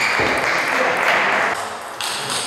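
Table tennis rally: sharp clicks of the celluloid ball striking the bats and the table, the clearest right at the start, over a steady hiss that stops about one and a half seconds in.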